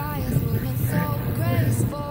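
Steady low rumble of wind and tyre noise from a road bicycle rolling on asphalt, picked up by a handlebar-mounted camera, with a faint melodic voice over it.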